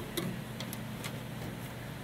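A few faint clicks and light handling noise from a circuit board being picked up and moved, over a steady low hum.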